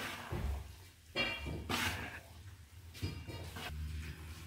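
A metal spoon stirring and scraping Maggi noodles in an aluminium kadai on a gas burner, in a few short scrapes over a low steady hum.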